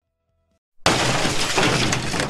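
A glass-shattering sound effect that bursts in suddenly just under a second in, after near silence, and keeps going as a dense crash of breaking glass.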